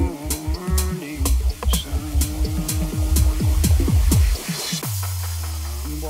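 Deep tech / tech house track from a DJ set: kick drum, hi-hats and synth melody. The drums drop out about five seconds in for a breakdown, leaving a held low bass note.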